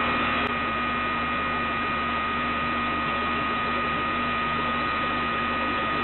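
Air-conditioning condenser unit running steadily in cooling mode, settling in after startup. The compressor and condenser fan make an even rush with a constant high whine and a low hum.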